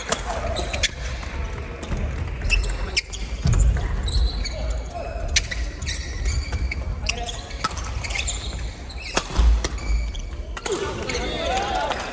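Badminton doubles rally: sharp racket strikes on the shuttlecock roughly once a second, with sneakers squeaking and thudding on the wooden gym floor, echoing in a large hall.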